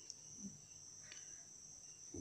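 Near silence with a faint, steady, high-pitched whine.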